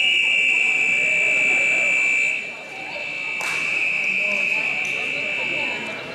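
Wrestling scoreboard buzzer sounding as the match clock runs out: a loud, steady high tone for about two seconds, then a quieter, slightly lower tone that holds until near the end, with a sharp click in the middle.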